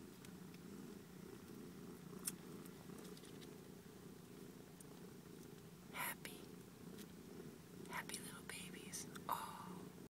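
Soft, steady purring from a mother cat nursing her young kittens. A few brief soft noises come about six seconds in and again near the end.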